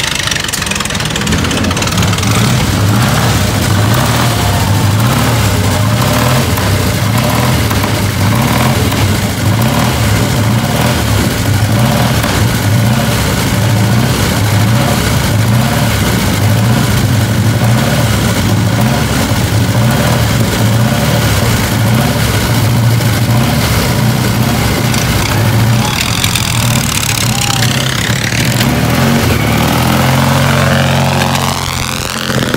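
Vintage racing car's engine running loud and uneven at a fast idle, revving near the end as the car pulls away.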